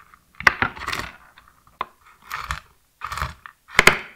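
Ceramic chef's knife chopping hazelnuts on a wooden cutting board: about five strokes, each a sharp knock of the blade on the board with a crunch of nuts breaking.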